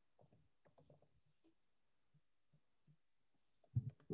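Near silence: faint room tone on a video-call microphone, with a brief low sound near the end.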